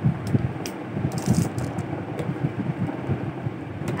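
Plastic toy cutlery and dishes being handled, giving a few scattered light clicks and clatters, over low rumbling handling noise on the microphone.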